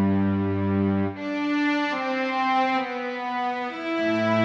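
Slow instrumental music of sustained chords, with the chord changing about a second in and twice more before the end.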